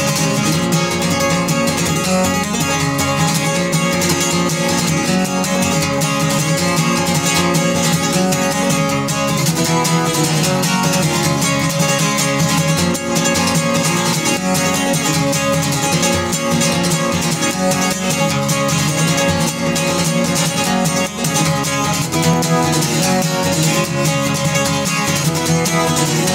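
Acoustic guitar with a capo played solo in a lively bluegrass style, a fast, steady instrumental break picked and strummed without singing, closing out the song.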